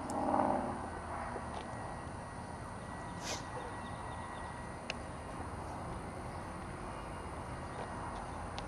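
Steady outdoor background noise on an open field. A short pitched call sounds in the first half-second, a brief high chirp comes about three seconds in, and there are a few faint clicks.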